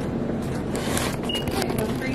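Steady background noise of an airport terminal shop, a constant hum and hiss, with a few faint clicks and one short high beep a little past the middle.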